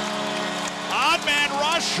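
A steady, held chord of several tones over arena noise. About a second in, a man's excited play-by-play voice comes in over it and grows louder.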